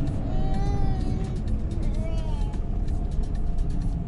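Steady road and engine noise inside a moving car's cabin as it drives a winding downhill mountain road. A faint high voice rises and falls twice in the first half.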